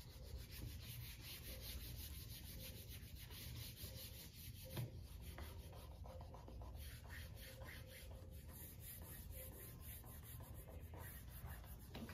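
A hand rubbing an adhesive vinyl stencil, covered by its transfer tape, down onto a painted wooden board to make it stick: a faint, continuous scratchy rubbing. There is one light tap about five seconds in.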